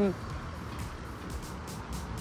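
Road traffic on a busy multi-lane city street: a steady low rumble of cars running and rolling past.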